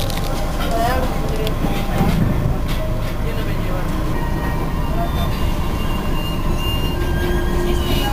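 Commuter train running along the rails, heard from inside the carriage: a steady low rumble with scattered clicks from the wheels and track.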